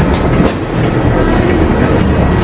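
Loud steady rumble of airport boarding noise inside a jet bridge, with a few clacks of footsteps on its floor.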